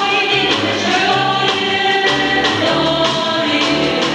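Women's vocal ensemble singing in harmony as a choir, several sustained voice parts together, over instrumental accompaniment with a bass line in held notes.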